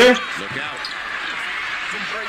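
Basketball broadcast audio: a steady arena crowd noise with a commentator's voice faintly underneath.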